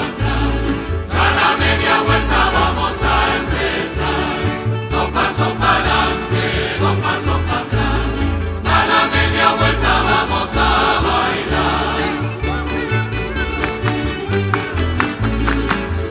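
Canarian folk ensemble playing a pasacatre: guitars, timples and lutes strummed in a brisk steady rhythm with a bass line under a chorus of voices. A few seconds before the end the singing drops away and the strings carry on alone.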